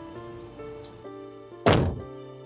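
A car door shut once with a heavy thunk near the end, over soft background music of held notes.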